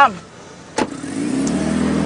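A car door shuts with one sharp bang, then the car's engine runs with a steady hum as the sedan pulls away.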